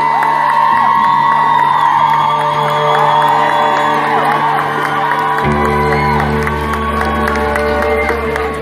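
Live band holding sustained chords, with a deep bass note coming in about five and a half seconds in, while the crowd cheers and whoops.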